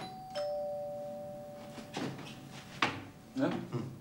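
Two-tone ding-dong door chime: a higher note, then a lower one a moment later, both ringing out and fading over about two seconds. Two sharp clicks follow.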